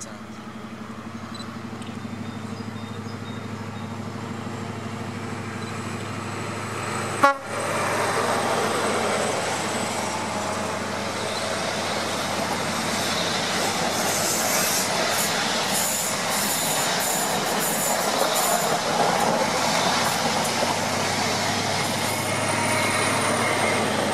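InterCity 125 HST passing at speed: the diesel engine of the leading Class 43 power car hums louder as it approaches, with a sharp bang about seven seconds in. The coaches then rush past, wheels clicking over the rail joints.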